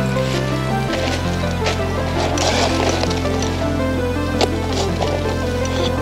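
Electronic background music with sustained bass notes and sharp percussive hits. The bass note shifts about a second in.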